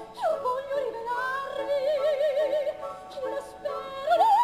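Lyric soprano singing an opera phrase with orchestra. Her voice slides down near the start, then settles on a held note with vibrato.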